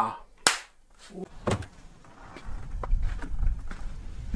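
A single sharp snap about half a second in, followed by a few faint clicks, then from about two and a half seconds in a low rumble of wind on the microphone.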